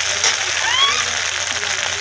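Ground masala frying in hot oil in a steel kadhai, giving a steady sizzle. About a second in, a short high-pitched voice slides up and down over it.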